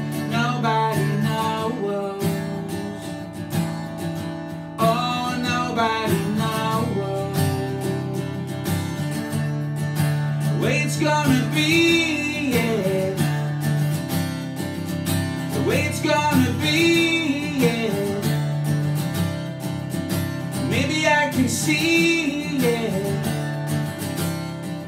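Steel-string acoustic guitar strummed in a steady chord pattern, with a man's voice singing short phrases about halfway through and again near the end.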